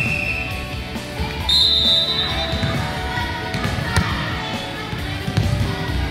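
A referee's whistle gives a short, shrill blast about a second and a half in, over music playing in a gymnasium. There are scattered thuds of a ball bouncing on the hard floor.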